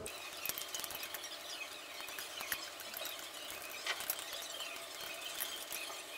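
A wire balloon whisk beating a thin, watery liquid in a glass bowl, its wires ticking and clinking rapidly and irregularly against the glass.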